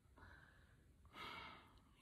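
Near silence, with a soft breath a little after a second in.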